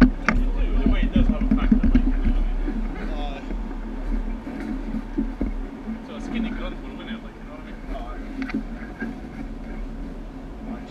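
Go-kart engines running on an indoor track, with indistinct voices over them. Loudest in the first few seconds, then easing off.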